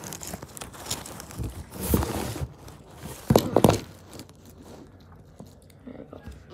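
Handling noise from a phone being moved around on a table: rubbing and scraping against the microphone, then a few loud knocks about three and a half seconds in.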